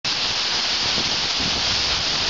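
Water cascading and sheeting down a steep granite slab close by: a loud, steady rushing hiss.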